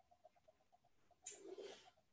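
Near silence: room tone with a very faint, evenly pulsing high tone, and a brief faint sound about a second and a half in.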